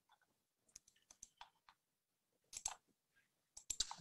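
Faint, scattered clicks in near silence: a few single ticks from about a second in, a short cluster past the middle, and a few more near the end.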